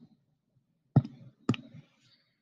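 Three short sharp clicks of choosing a pen colour on a computer: one at the start, one about a second in and one half a second later.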